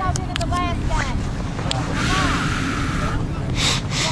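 Wind rumbling on the microphone, with faint, indistinct voices of people on the sideline. A short rush of hiss comes about halfway through, and another brief one near the end.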